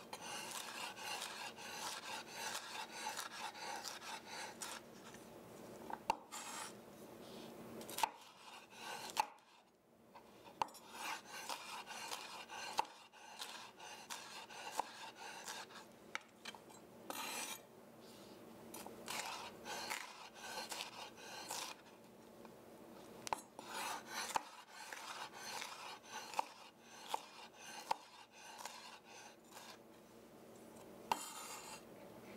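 A chef's knife dicing a yellow bell pepper on a wooden cutting board: quick runs of knife strikes against the board, broken by short pauses, the longest about nine seconds in.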